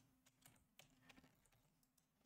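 Very faint computer keyboard typing: scattered light key clicks, almost at silence, over a faint steady hum.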